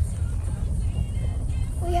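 Steady low rumble of a moving car heard from inside the cabin, with faint music or singing in the background.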